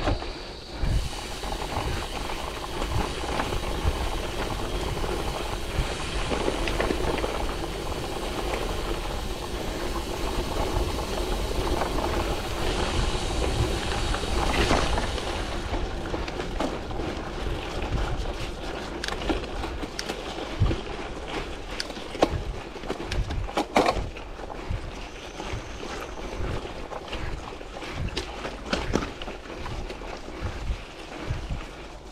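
Gravel bike rolling along a rough dirt and gravel trail: steady wind noise on the handlebar camera's microphone over the rumble of the tyres. From about halfway on, frequent sharp knocks and rattles as the bike goes over bumps.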